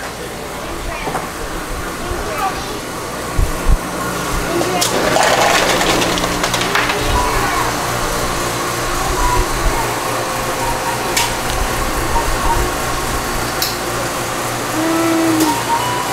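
Convenience-store background: a steady low hum with music and faint voices over it, and a louder stretch of noise around five to seven seconds in.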